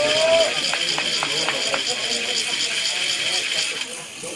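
A long, shrill, trilling whistle blast, the kind a referee's pea whistle makes. It holds one high pitch and cuts off sharply just before the end, with faint voices underneath.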